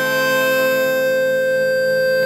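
Chromatic button accordion holding one long, steady chord in a slow sevdalinka.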